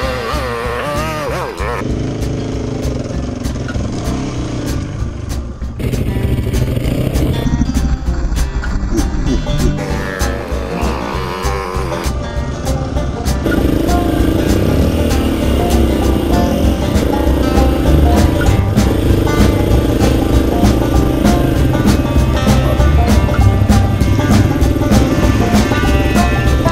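KTM enduro motorcycle engine running as the bike rides along, mixed with a music soundtrack; the engine sound gets louder and steadier about halfway through.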